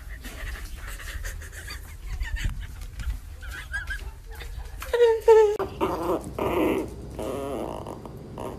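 A woman laughing loudly in two short bursts about five seconds in, then a small toy-breed dog growling in a drawn-out, wavering grumble.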